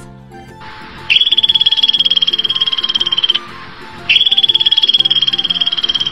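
Xerus (African ground squirrel) call played as two long, high-pitched rapid trills of about two seconds each, with a pause of about a second between them, over light background music.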